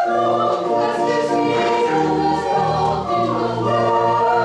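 Church choir singing a choral anthem in held, changing chords.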